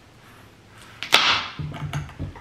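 A kitchen knife forced through a butternut squash, splitting it with one sharp crack about a second in as the blade comes down onto the cutting board. Softer knocks follow as the halves shift on the board.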